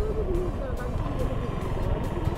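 Steady low rumble of wind on the microphone and a motorcycle's engine while riding along at road speed, with a faint melody over it.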